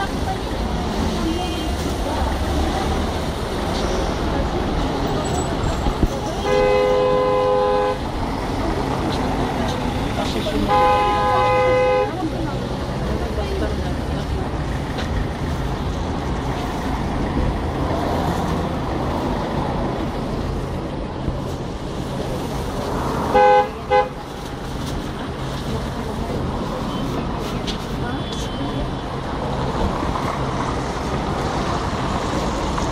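Vehicle horn sounding over steady street traffic: two long honks about a second and a half each, around 7 and 11 seconds in, then two quick short toots near 23–24 seconds.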